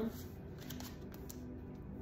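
Tarot cards being drawn from a deck and laid down on a tabletop: soft card slides and light taps, over faint background music.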